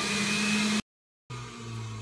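Philips HR1836 centrifugal juicer's motor running steadily with a constant whine while fruit is pushed down its feed tube. It cuts off suddenly a little under a second in, and after a brief silence a fainter low hum remains.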